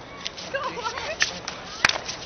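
Faint voices in the background, then a single sharp crack near the end.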